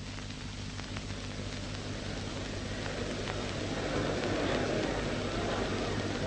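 Hiss and mains hum of an old 1939 film soundtrack, with a grainy noise that swells steadily louder from about the middle on.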